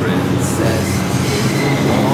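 New York City subway train (a 4 train) at the platform, with a loud, steady rumble and hum from the cars.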